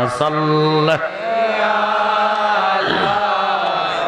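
Devotional zikr chanting from a man's voice through a PA microphone, in long held notes with a change of pitch about a second in.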